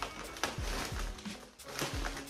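Brown paper bag rustling and crinkling in irregular bursts as hands open it and reach inside.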